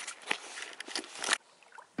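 Close rustling and scraping noise with irregular clicks, stopping abruptly after about a second and a half.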